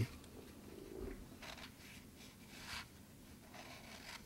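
A few faint scrapes of a metal spatula blade run around the inside wall of a styrofoam cup, loosening set alginate from the cup.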